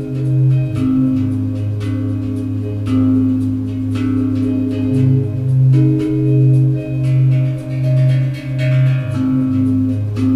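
Live electronic music: ringing notes from a hand-played tank drum over a pulsing low synthesizer bass line, with a light regular ticking beat on top.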